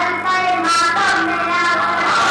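A boy singing a devotional song solo, a melodic line of held notes whose pitch bends and wavers.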